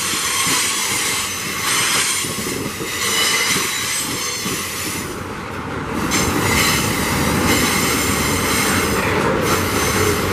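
Loaded iron-ore gondola wagons (GDT) of a freight train rolling past: steel wheels on rail with a steady high-pitched squeal over a continuous wheel clatter.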